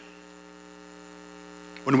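Steady electrical mains hum, a buzz of many evenly spaced steady tones, in the recording chain of a microphone and sound system. A man's voice comes in at the very end.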